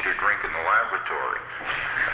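Speech only: a person talking, with a thin, narrow-band sound.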